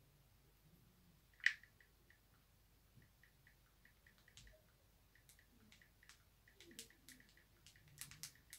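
Near silence: room tone with faint scattered clicks, one sharper click about one and a half seconds in.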